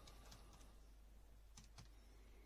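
A few faint clicks of buttons being pressed on a Casio scientific calculator, two of them close together near the end.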